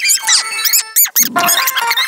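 Cartoon dialogue played at four times speed, the voices squeaky and chipmunk-high in quick rising and falling sweeps; a little after a second in, sped-up laughter starts.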